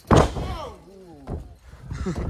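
A wrestler's body slamming down hard in the ring: one loud thud just after the start, then shouted reactions.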